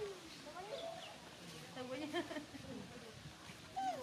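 Baby macaque giving short whimpering cries that rise and fall in pitch, several in a row: the distress calls of an infant being weaned by its mother.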